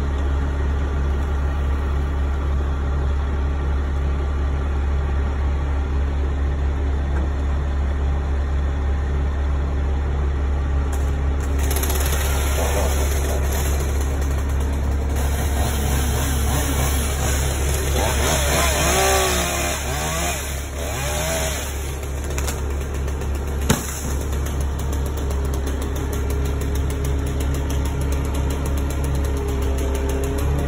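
Bucket truck's engine running steadily with a low drone, keeping the aerial lift powered. A rushing hiss joins in for about ten seconds in the middle, and a single sharp knock comes about three-quarters of the way through.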